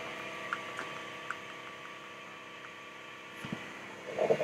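Steady hum of a laser engraver's air-assist pump and exhaust fan running, just switched on, with a few faint ticks in the first couple of seconds.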